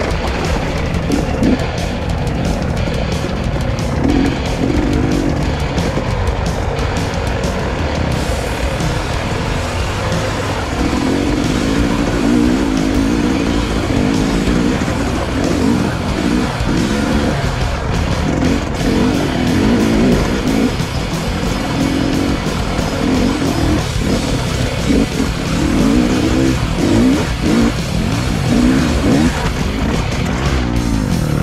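KTM 300 EXC two-stroke enduro engine under the rider, its note rising and falling as the throttle is worked over rough, rocky trail. Music plays along with it.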